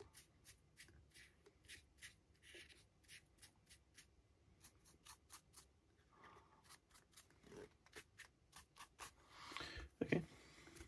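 Faint, repeated scratchy strokes of a flat paintbrush dragging light grey paint down over the textured surface of a 3D-printed model base, about two strokes a second, with a louder rustle near the end.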